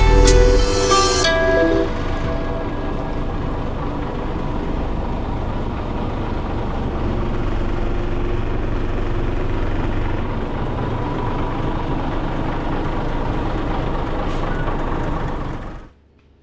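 Background music dies away in the first two seconds, then a Scania double-decker bus's diesel engine runs steadily, up close behind the bus.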